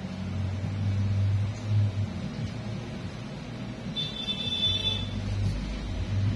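A low, steady mechanical hum that dips for a while in the middle, and a high-pitched beeping tone lasting about a second, about four seconds in.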